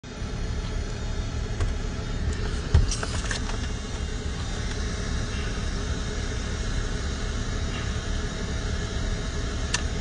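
Steady low rumble of a car heard from inside the cabin, with a thump and a few clicks about three seconds in.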